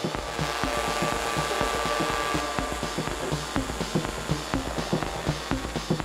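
Live electronic dance music played on hardware, including an Elektron Octatrack MKII sampler. A steady percussive beat runs under sustained synth tones, and a hiss-like noise swell rises and falls over the first few seconds.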